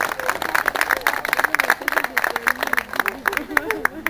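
An audience applauding, many hands clapping at once, thinning to scattered claps near the end, with voices talking over it.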